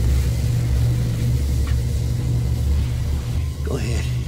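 Deep, steady low rumble from a TV episode's soundtrack, sustained through a tense pause in the dialogue.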